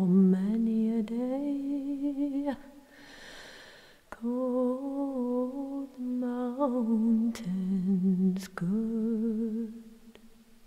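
A solo unaccompanied voice singing a slow, mostly wordless melody like humming, in long held notes with vibrato. A breath is drawn about three seconds in.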